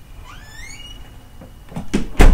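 A short high squeak rising in pitch about half a second in, followed by a few soft knocks near the end.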